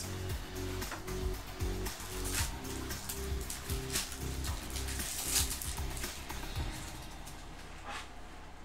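Background music playing, with the crinkle and tear of a trading-card pack wrapper being ripped open and handled, loudest a couple of times mid-way.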